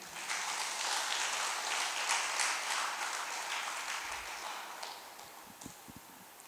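Audience applauding, dying away over about five seconds.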